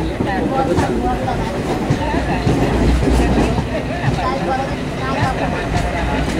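Jan Shatabdi Express passenger coach running over the rails, heard from inside the moving train: a steady rumble of wheels on track with a few clicks from rail joints.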